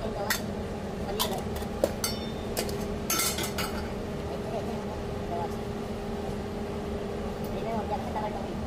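Metal pans and utensils clinking and clattering against a stainless steel counter, a cluster of sharp clinks in the first few seconds, over a steady low hum of kitchen equipment.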